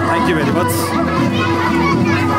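Background music with sustained notes, with people's voices, including a small child's, chattering over it.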